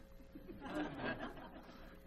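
Faint chuckling and laughter from a congregation, rising about half a second in and fading away.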